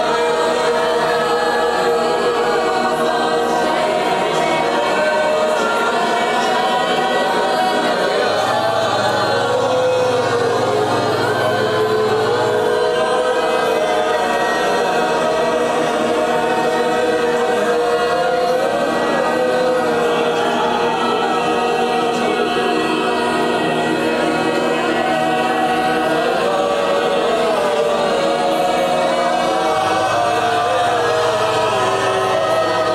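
A congregation of many voices singing together in worship, in long, drawn-out lines, with a low held note added for a few seconds about eight seconds in.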